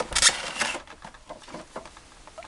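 Clear plastic blister pack scraping and rustling as it slides out of a cardboard box for under a second, followed by a few faint clicks of handling.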